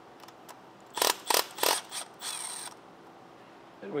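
Ratchet wrench on an engine bolt: a few loud, sharp metallic clicks about a second in, then a short fast run of ratchet clicks.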